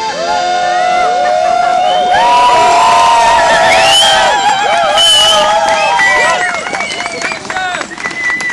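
Several voices cheering and whooping loudly in overlapping, gliding shouts as an accordion's held chord ends at the start. The shouting dies down about six seconds in, giving way to short sharp sounds like scattered clapping.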